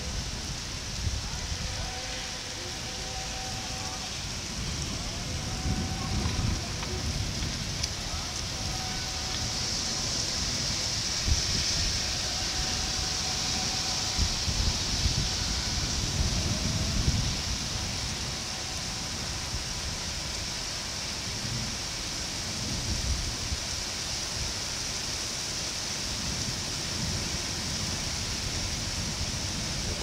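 Heavy rain pouring down in a steady hiss, heaviest near the middle, with irregular low buffeting of wind gusting on the microphone.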